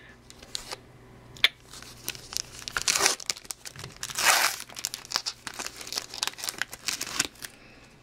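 Crinkling and rustling of a trading card pack's wrapper, with light clicks as the cards are handled. The loudest crinkle comes about four seconds in.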